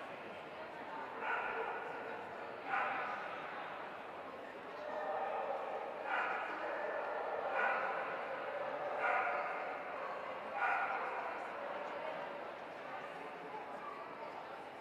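A dog barking in a large, echoing hall, a run of about seven barks roughly one every second and a half, over the murmur of a crowd.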